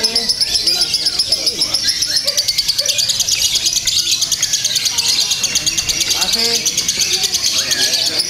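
A caged lovebird singing a long, unbroken run of rapid, high, evenly spaced chirps, with people's voices faint behind it.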